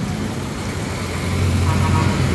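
Road traffic passing on a multi-lane street, with the low engine rumble of a heavy container truck growing louder in the second half as it approaches.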